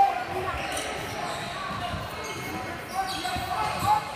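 Basketball bouncing on a hardwood gym court during play, in irregular knocks, with voices echoing in the large hall.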